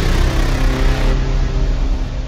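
Loud intro music sound design: a heavy, engine-like low rumble with several held steady tones over it.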